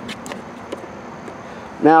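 Steady low background noise with a few faint clicks in the first second, then a man's voice begins near the end.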